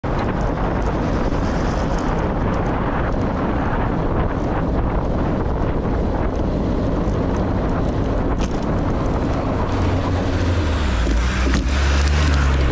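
Wind buffeting the microphone and steady road noise from a moving bicycle, with scattered light clicks. From about ten seconds in, a box truck's engine rumble grows louder as the truck approaches head-on.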